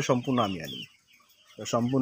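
A flock of 25-26-day-old broiler chickens calling, with short high chirps in the first second, against a man's voice.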